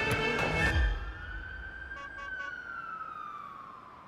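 Dramatic music cuts off about a second in. A single faint siren wail follows, rising and then slowly falling as it fades, with three short beeps near the middle.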